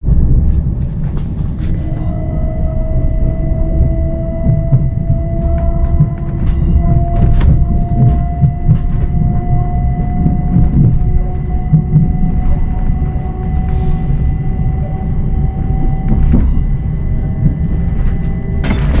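Cabin sound of a Heathrow Express electric train under way: a loud low rumble of wheels on the track with scattered clicks and knocks, and a thin whine from about two seconds in that rises slowly and steadily in pitch as the train gathers speed.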